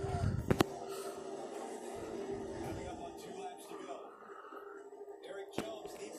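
NASCAR race broadcast playing from a television in a small room: commentators talking over the steady drone of the race cars. Two sharp clicks, one just after the start and one near the end.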